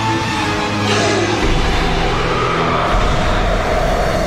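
Background music from the animated episode's score, with held notes over low bass notes that change every second or two.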